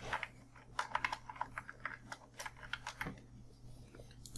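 Computer keyboard being typed on, a quick irregular run of short key clicks as a string of digits is entered, stopping about three seconds in.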